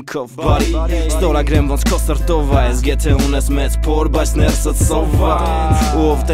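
Armenian hip-hop track: rap vocals over a beat with a deep, sustained bass and regular drum hits. The backing briefly drops out for about half a second at the very start.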